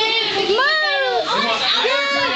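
Children's voices shouting and chattering together, with one long high call that rises and falls in pitch.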